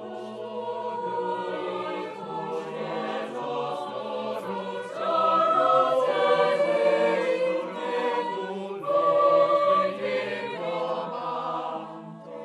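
Mixed choir of men's and women's voices singing sustained chords in several parts, swelling louder about five seconds in and again around nine seconds.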